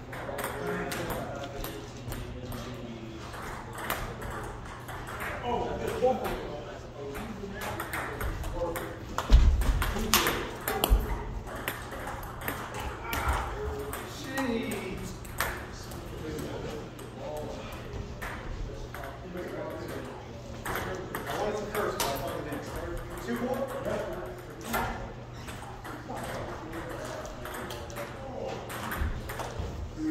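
Table tennis ball clicking off paddles and the table in quick back-and-forth rallies, with breaks between points. A dull heavy thump about nine seconds in.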